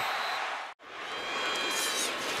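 Stadium crowd noise from a football broadcast, an even din that breaks off for a split second just under a second in at a cut between clips, then comes back and builds slightly as the next play gets under way.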